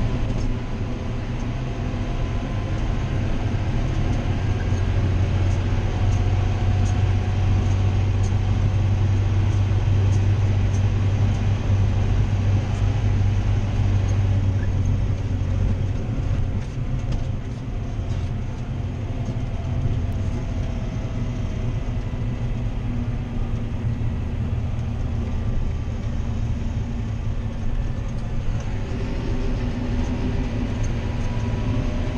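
John Deere 7530 tractor driving on a road, heard from inside its cab: the six-cylinder diesel engine gives a steady low drone. The drone is louder in the first half, eases about halfway through and builds again near the end.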